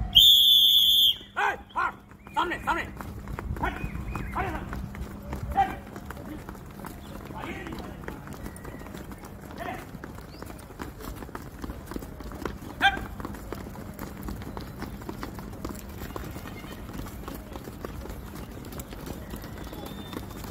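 A coach's whistle blows once for about a second at the start. Then a group of people hop and stamp in place on dry dirt ground, many feet thudding in a continuous rhythmic patter, with a few short shouts early on.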